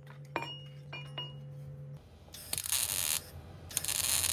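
A few light metallic taps on a sheet-metal patch panel, each with a short ringing clink. Then two short bursts of hissing, each under a second.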